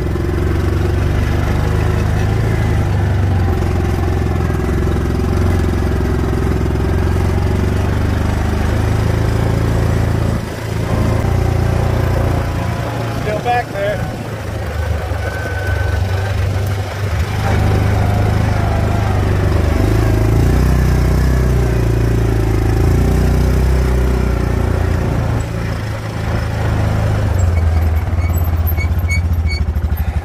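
Axis 700 UTV engine running hard under heavy load in low range, pulling a trailer of about 1,200 pounds of oak logs up a steep hill. The engine note is steady, with a few brief dips and surges in level as the load and throttle change.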